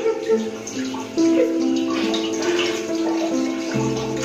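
Water running from a bathroom sink tap as hands are washed under it, with slow background music of held notes playing over it.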